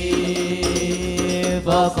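Hadroh group singing Arabic devotional verse to the beat of hand frame drums. A singer holds one long note over steady drum strokes, and a new sung line with a wavering pitch begins near the end.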